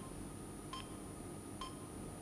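Faint short electronic beeps, like a soft bell ping, repeating evenly a little under a second apart over a low hum. This is a news programme's background sound bed.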